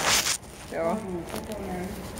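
A brief loud rubbing rustle of the recording device being handled and repositioned, then a person's voice speaking.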